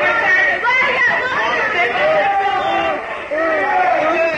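Several people's voices overlapping: chatter and drawn-out calls, rising and falling in pitch, with no clear words.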